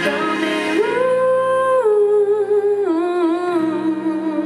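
A woman singing long held notes into a microphone with acoustic guitar underneath: a high note held from about a second in, then stepping down twice to lower notes with a slight waver near the end.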